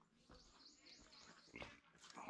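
Faint forest sound: a bird gives a quick run of high chirps, with a few soft footfalls on a dirt trail.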